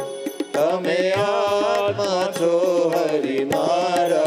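Congregation singing a devotional song together, many voices in unison over a steady percussion beat.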